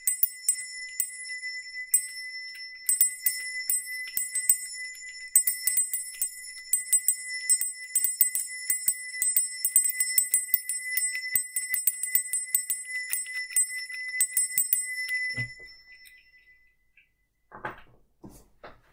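A small brass hand bell rung quickly and unevenly, its clapper striking many times over a steady bright ring. The ringing stops about fifteen seconds in and fades, followed by a couple of soft handling sounds.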